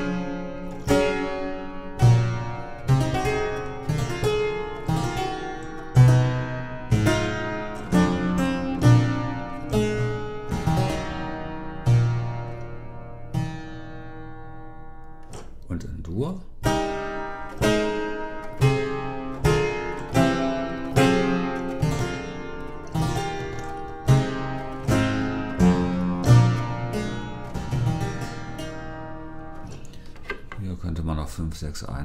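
Harpsichord playing two short passages of plucked chords in a slow falling sequence, each closing on a held final chord. The first is in a major key and the second in F minor, with a pause of about two seconds between them near the middle.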